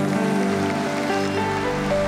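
Live worship band music holding sustained chords, with no singing.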